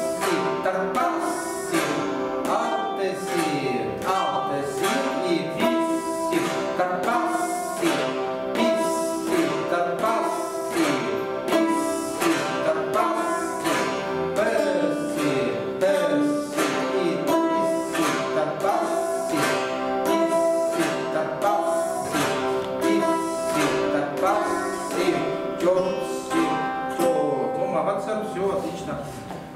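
Chatkhans, Khakas plucked zithers, played together in an evenly paced run of plucked notes, with pitches bending up and down as the strings are pressed. It is a beginners' practice exercise.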